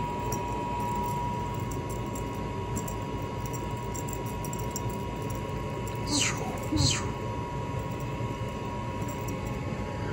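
Steady hum of a basement water heater running, which the owner calls pretty loud. Two quick falling swishes cut through it about six and seven seconds in.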